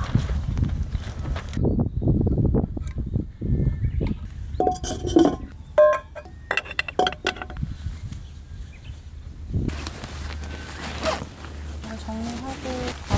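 Metal camping cookware clinking: footsteps on grass with rustling early on, then several short ringing metallic clinks in the middle. A steady rushing noise comes in for the last two seconds.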